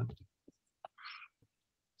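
Mostly silent gap between speakers, with a few faint mouth clicks and a short breath about a second in.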